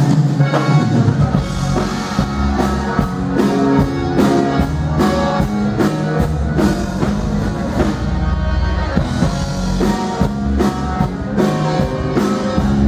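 Live Tejano conjunto band playing a song: button accordion lead over guitar, bass and a drum kit keeping a steady beat.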